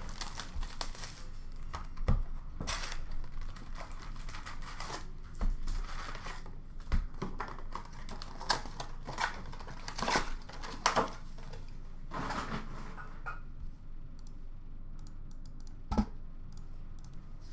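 Cardboard retail box of hockey card packs being torn open, with the packs pulled out and set down: irregular tearing and rustling of paper and cardboard, with sharp taps. The handling grows quieter in the last few seconds.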